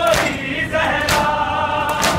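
Noha lament sung by a male reciter with a crowd of men chanting along in unison. Sharp chest-beating (matam) thumps come about once a second, three times.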